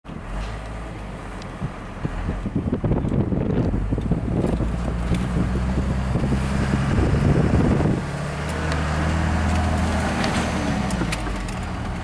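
Car engine and road noise heard from inside the cabin while driving: a steady low hum, with rumble and small knocks in the first half and the engine note sinking slowly near the end.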